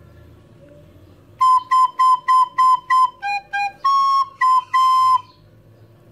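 Soprano recorder playing a short phrase, starting about a second and a half in: a run of quick repeated B notes, two lower G notes, a held C, then B again.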